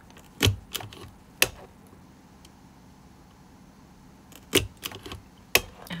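Crop-A-Dile hole punch squeezed through a binder cover, giving sharp snapping clicks as it punches and springs back. There are two bursts, one about half a second in and one again about four and a half seconds in, as two holes are punched.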